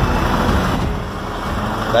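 Diesel engine of a Volkswagen Delivery 9.160 box truck running as it pulls away, a steady engine noise that dips slightly in the middle and swells again near the end.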